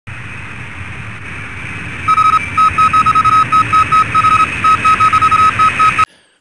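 Steady hiss of static with a faint high hum, joined about two seconds in by a single high electronic tone beeping on and off in an irregular run of short and long beeps.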